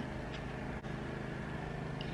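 A steady low background hum with faint hiss, the room tone of the recording between sentences, with no distinct event.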